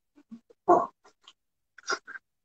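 A man's short exclamation, "oh", about a second in, among a few faint, short sounds.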